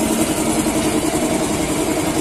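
Small underbone motorcycle engine running at a steady idle.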